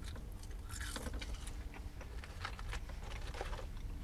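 Close-up chewing of crisp seasoned french fries: an uneven run of short, sharp crunches over a low steady rumble.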